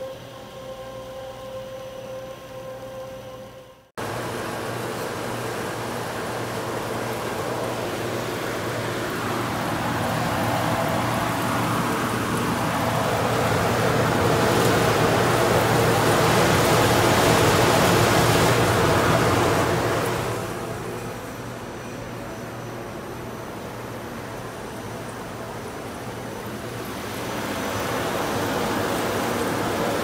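Texwrap ST1432 shrink tunnel running: a steady, loud rush of blown air over a low motor hum. It swells for several seconds around the curtained tunnel opening, then eases. The first few seconds hold the shrink wrapper's steadier machine hum, which cuts off suddenly.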